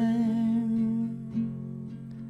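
A voice humming one long held note over acoustic guitar. The voice drops away a little past halfway, leaving a quieter ringing chord.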